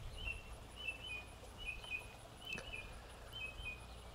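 Small birds chirping faintly: short high chirps in little clusters, recurring every half second or so, over a faint, even high-pitched ticking about four times a second.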